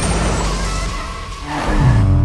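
Channel logo sting: a long noisy whoosh over a low steady rumble. Near the end it gives way to the Chevrolet Chevette's engine running.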